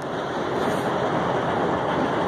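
Diesel dump truck engine idling: a steady rumbling noise that grows slightly louder over the first half second, then holds even.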